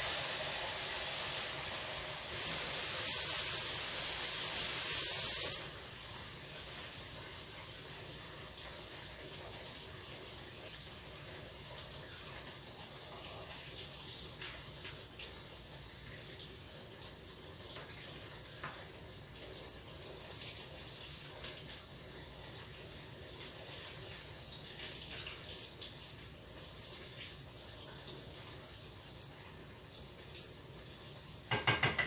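Yuca dough frying in hot oil in a pan: a louder, brighter sizzle for about three seconds shortly after the start as dough goes into the oil, then a steady, quieter sizzle with a few light spatula clicks.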